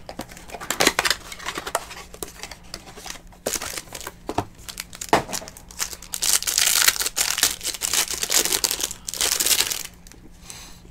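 The plastic wrapper of a 2019 Absolute Football trading-card pack crinkling and tearing as it is ripped open and peeled off the cards. The crackling is loudest over the last few seconds, then stops abruptly.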